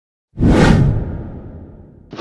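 Whoosh sound effect for an intro title, with a deep low end. It starts suddenly about a third of a second in and fades away over about a second and a half.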